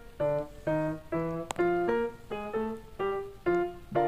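Background piano music: single notes played one after another, about two a second, each ringing out and fading before the next.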